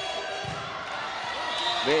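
Spectators in a volleyball hall murmuring during a rally, with a dull thud of the ball being struck about half a second in.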